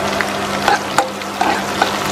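Sliced onions sizzling in hot oil in a nonstick wok: a steady frying hiss with scattered sharp pops and ticks.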